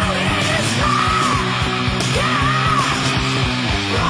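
Live heavy metal band playing: distorted electric guitars over bass and a steady drum beat, with a high melodic line that bends up and down in repeated arches.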